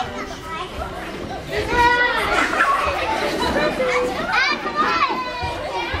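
Several young children's voices chattering and calling out over one another, getting busier and louder about a second and a half in.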